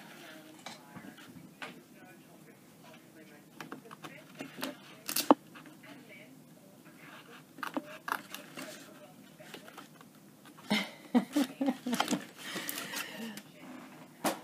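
Small scissors snipping paper in short, scattered cuts, with a sheet of paper being handled and rustled. A sharp snap comes about five seconds in, and a quicker run of snips and clicks near the end.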